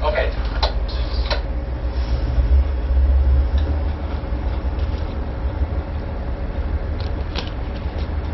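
Tugboat's diesel engines running with a deep steady rumble that swells about two and a half seconds in as power is brought up to get under way. A few short clicks are heard over it.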